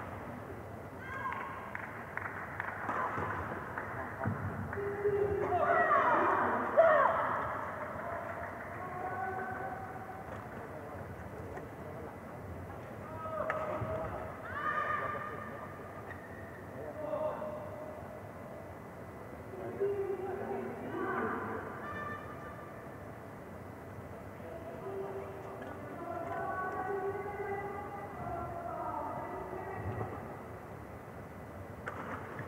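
Indistinct voices talking on and off, loudest about six to seven seconds in, over a steady hall background.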